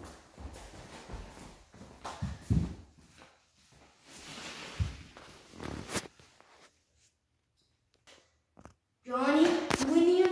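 Scattered soft footsteps and thumps and rustles from a handheld camera being carried, then about two seconds of near silence, and a child starts talking about a second before the end.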